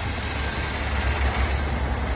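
Steady low rumble of outdoor street noise with no distinct events.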